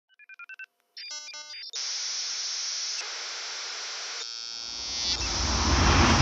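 Electronic sounds: a quick run of short beeps, then a brief burst of tone chords, then a steady hiss that grows into a loud, rising rush of noise near the end.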